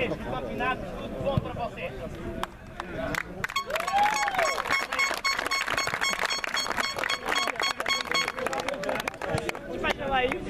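Crowd applause: many people clapping, starting about three and a half seconds in and lasting about five seconds before thinning out.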